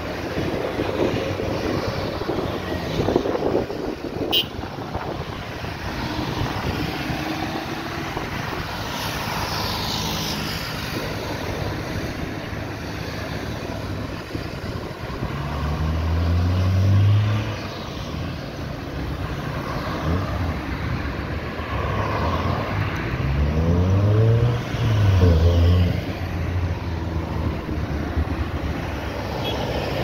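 Road traffic driving around a roundabout: cars and a light truck passing one after another over a steady rush of tyres and engines. Twice a vehicle passes close, its engine note rising and then falling, loudest just past halfway and again near the end.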